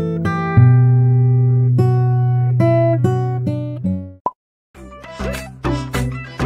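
Acoustic guitar music, plucked notes ringing and fading one after another. About four seconds in it breaks off for a moment, and a different music track with a regular beat begins.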